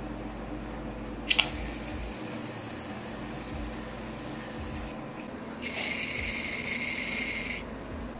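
Aerosol can of shaving foam spraying: a long hiss starting about a second in, then a second, louder hiss of about two seconds near the end.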